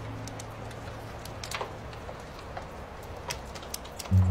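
Campfire crackling: scattered sharp pops and snaps over a soft hiss. A last low held note of music fades out in the first second or so.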